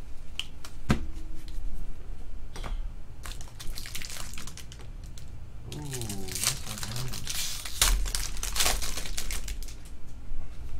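A stack of stiff baseball cards is being handled and shuffled by hand. There are crinkling and rustling sounds and scattered sharp clicks, and the rustling grows busier after about three seconds.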